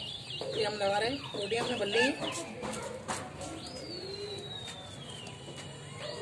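Birds calling: a quick run of short, wavering calls in the first two seconds or so, then one long thin whistle that slides slowly down in pitch about halfway through.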